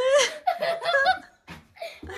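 People laughing, the laughter dropping away briefly in the later part.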